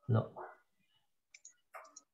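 A voice says one short word, "lo" (Hebrew for "no"), over a video call. A few faint clicks follow about a second and a half in.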